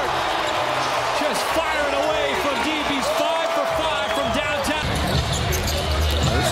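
Basketball game sound on an arena court: many short sneaker squeaks and a dribbled ball, over steady crowd noise.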